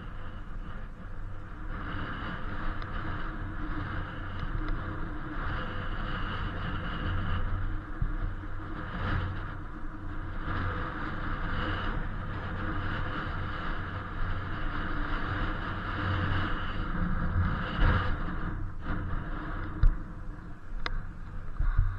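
Steady wind and road noise from riding an Inmotion V8 electric unicycle across asphalt, with a faint pitched hum over it and a couple of sharp knocks near the end.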